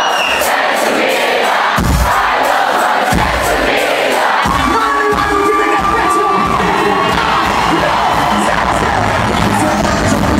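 A loud live band with a concert crowd cheering and shouting over it. The bass drops out over the first few seconds, hits once about two seconds in, and comes back strongly from about three seconds on.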